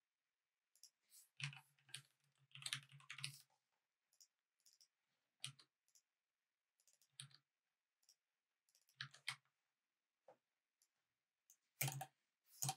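Faint clicking of computer keyboard keys in irregular short bursts of typing, the longest run starting about a second and a half in, with another burst about nine seconds in.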